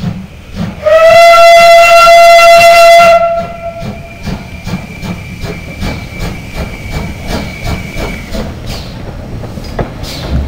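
GWR 'City' class 4-4-0 No. 3717 City of Truro sounding its steam whistle as it approaches: one loud, steady blast of about two seconds starting about a second in. A fainter high whistle note lingers until about eight seconds in, over a regular beat from the moving locomotive.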